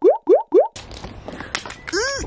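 Three quick, identical rising bloops, about four a second, with silence between them: an edited-in cartoon-style sound effect. They stop about three-quarters of a second in, and an unsteady background of handling noise with a few clicks follows.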